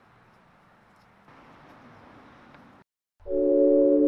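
Faint steady background hiss, then a moment of silence, then about three seconds in loud sustained synthesizer chords of ambient background music begin.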